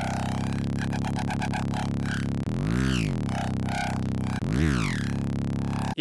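A heavy synth bass patch from Kilohearts Phase Plant playing, built on FM from a very high-tuned carrier. A slight random pitch variation on the carrier gives it small shifting variations. Steady low notes are joined by pitch swoops that rise and fall, about three seconds in and again near the end, over a fast stuttering texture up high.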